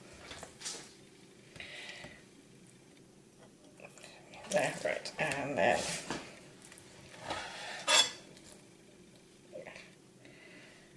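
Chef's knife slicing raw salmon on a cutting board: short scrapes of the blade, with a sharp knock of the knife on the board near eight seconds.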